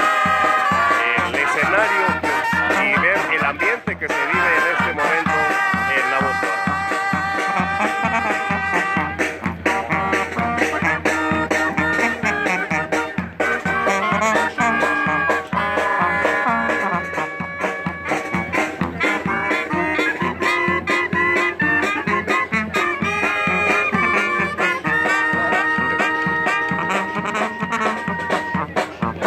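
A brass marching band playing, with trumpets and a sousaphone carrying held notes over a steady drumbeat.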